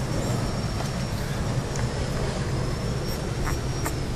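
Steady background hum and hiss of a running machine such as a room fan, with a faint high-pitched whine and a few light clicks.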